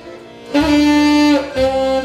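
A saxophone and two piano accordions playing a slow melody together, with the accordions' bass notes underneath. After a brief lull at the start, a held note comes in about half a second in and is followed by a shorter one.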